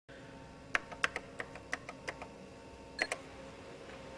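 Typing on a computer keyboard: a quick run of about a dozen key clicks, then two louder clicks close together about three seconds in, over a faint steady hum.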